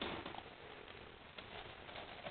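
Faint soft clicks and rustling as a young English Setter puppy eats a lure treat and shifts from lying down to sitting on a rug.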